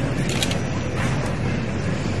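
Steady room noise of a large hall with a seated audience murmuring, with a couple of short clicks or rustles about half a second and a second in.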